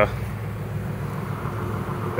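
Steady low hum of honeybees buzzing around an opened hive and a frame of comb held up from it.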